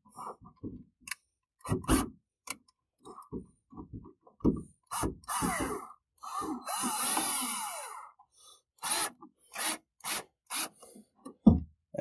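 Plastic trim and its hinge linkage on an Infiniti G37 convertible's top finisher (flapper) panel being pushed up by hand, giving a series of clicks and knocks. About five seconds in there is a squeaky scraping rub lasting about three seconds.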